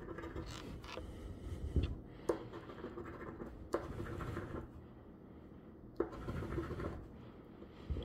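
A large metal coin scratching the coating off a lottery scratch-off ticket: faint rasping strokes, broken by a few sharp clicks.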